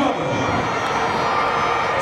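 Stadium crowd cheering and shouting in a steady din during a sprint relay race.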